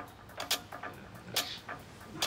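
A few soft, scattered clicks over quiet room tone, the two clearest about half a second in and near one and a half seconds.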